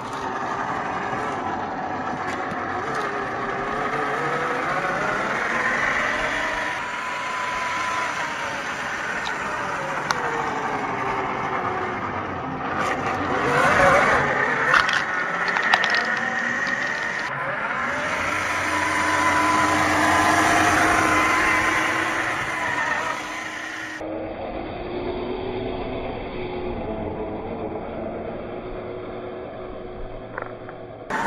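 Electric motor and geartrain of a Traxxas TRX-4 RC crawler whining, the pitch rising and falling with the throttle, over the scrape of its tyres on ice and rock. About halfway through it grows louder, with several sharp knocks, and in the last few seconds the sound is duller.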